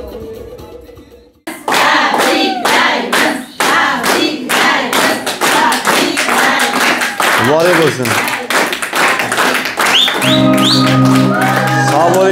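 Music fading out, then a group clapping with singing voices over it; about two seconds before the end a steady held musical tone joins in.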